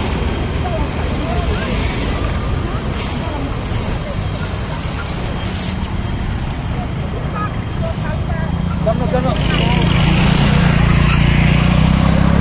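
Road traffic passing close by: engines of scooters, cars and trucks over a steady road noise, with people's voices in the background. From about nine seconds in, a louder engine hum builds as a vehicle comes near.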